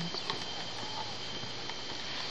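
Faint rustling and a few light knocks as a cloth bag holding wooden paddle combs is handled, over a steady high-pitched background tone.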